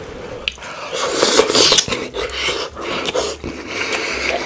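Close-miked eating sounds of rotisserie chicken: wet biting and chewing with many sharp clicks and smacks, loudest between about one and two seconds in.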